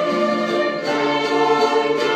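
Church orchestra of violins, guitars and other instruments playing held chords with a group of singers, the harmony moving to new notes a little under a second in.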